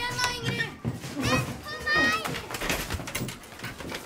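High-pitched children's voices shouting, in two outbursts about a second apart, without clear words.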